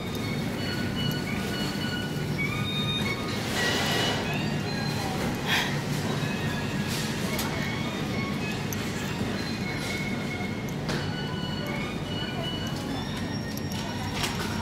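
Shopping trolley being pushed through a supermarket, its wheels rolling and rattling steadily, under faint in-store background music.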